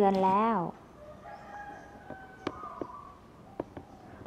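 A rooster crowing faintly, one long call of almost two seconds, with a sharp click partway through.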